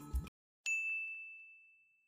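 A single bright, high ding from a notification-style sound effect, struck about half a second in and ringing out over about a second. The background music cuts off just before it.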